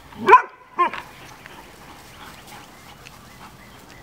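A dog barks twice in quick succession near the start, the first bark the louder, while several dogs play rough together.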